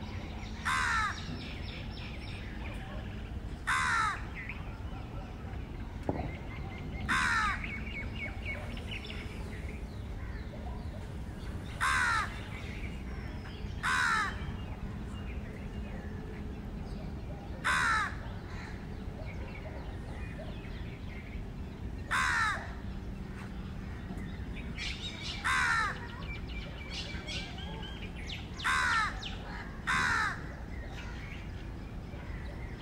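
A bird cawing: short single calls repeated about every three to four seconds, nine in all, over a low steady background hum.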